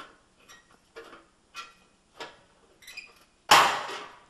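Towel-wrapped flathead screwdriver prying at the clip under a gas range's cooktop: small scraping clicks about every half second, then, about three and a half seconds in, a loud sudden crack as the stiff clip pops free.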